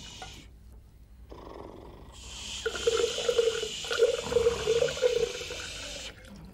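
Water poured from a glass jug into a drinking glass: a short pour at the start, then a longer pour from about two seconds in to the end. A wavering steady tone, the loudest sound here, runs through the middle of the second pour.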